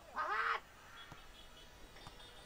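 A single loud, short shout from a person on the pitch, rising then falling in pitch and lasting about half a second, just after the start.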